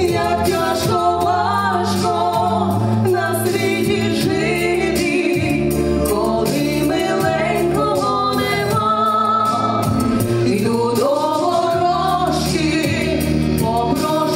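Two women singing a duet into hand-held microphones over amplified backing music with a steady beat.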